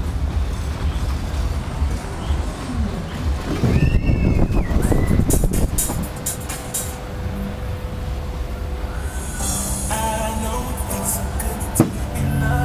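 Ride of an SBF Visa free-fall drop tower heard from the gondola, with fairground music and low wind rumble on the microphone throughout. A louder noisy rush comes about four seconds in, and a hiss and a single sharp knock come near the end as the gondola is back down at the bottom.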